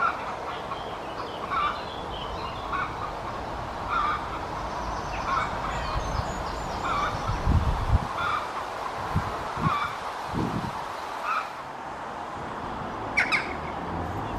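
Chicken clucking: short calls repeated about once a second. A few low thuds come in the middle, and a sharp click near the end.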